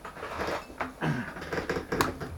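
Hands handling a plastic smartphone holder and a smartphone on a desk: a few light knocks and rubbing sounds.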